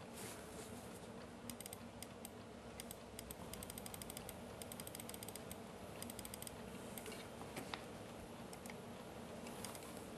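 Faint typing on a computer keyboard: runs of quick light key clicks for several seconds, then a few scattered clicks, over a low steady room hum.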